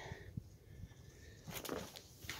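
Mostly quiet, with a few faint ticks of handling and a short rustle near the end as a person turns and moves.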